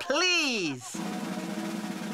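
Snare drum roll: a steady, even rattle that starts just under a second in, as a drum roll sound effect in a cartoon.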